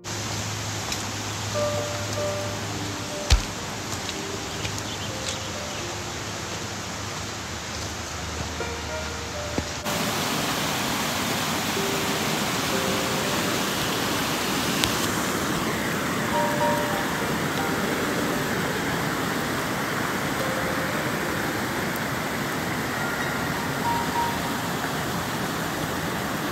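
Steady rushing noise of running water, with soft piano background music over it for about the first ten seconds. About ten seconds in the music ends and the water noise steps up louder, staying steady.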